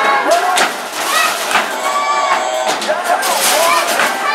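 Super Shot basketball arcade machines in play: electronic tones and chirping game sounds over balls knocking against the backboards and rims, with busy arcade chatter behind.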